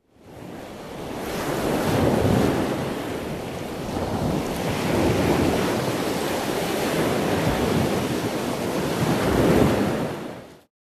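Ocean surf: waves washing in slow surges that swell and ebb every few seconds, fading in at the start.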